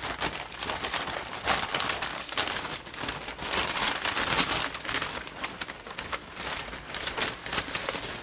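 Stiff brown kraft paper wrapping rustling and crinkling in irregular bursts as it is handled and pulled open by hand.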